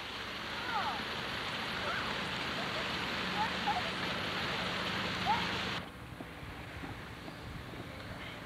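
Steady rushing outdoor noise on a home camcorder soundtrack, dropping off abruptly about six seconds in, with a few faint distant voices over it.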